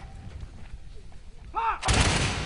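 A low din with brief shouting, then, just before the end, a loud volley of musket fire from a line of soldiers.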